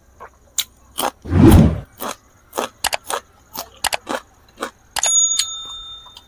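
Close-miked crunching as a raw long bean pod is bitten and chewed: a run of sharp, crisp crunches, with a louder bite about one and a half seconds in. Near the end a brief bell-like metallic ring fades out over about a second.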